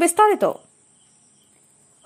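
A woman's narrating voice finishes a phrase about half a second in. Then comes near silence with only a faint, steady high-pitched whine.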